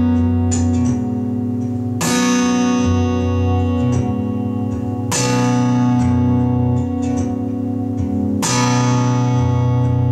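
Acoustic guitar played with a capo and no voice: three full chords strummed about two, five and eight and a half seconds in, each left to ring, with lighter picked notes between them.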